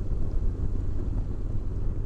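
Steady wind rush on the microphone over the low running and road noise of a Honda NC750X motorcycle cruising along.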